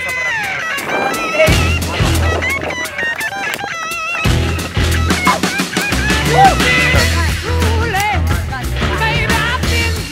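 Background music: a song with guitar and a singing voice over a bass line that drops out briefly about four seconds in.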